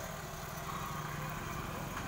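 Steady low background hum with an even wash of noise, no distinct events.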